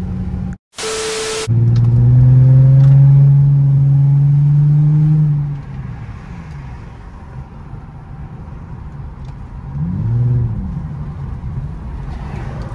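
Infiniti G35x's 3.5-litre VQ V6 pulling hard under acceleration for about four seconds, its note climbing slowly before it eases off, then swelling and falling once more near the end. A short sharp burst of noise comes about a second in.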